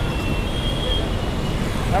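Steady rumble of busy road traffic, with a faint thin high tone running for about a second and a half.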